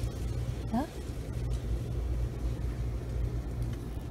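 Steady low rumble in the background, with one short spoken word about a second in.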